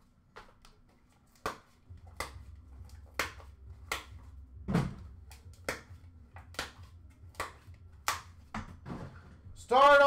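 Hands handling trading cards and a metal card tin on a counter: a run of sharp clicks and taps, roughly one a second. A low hum comes in about two seconds in, and a man starts speaking near the end.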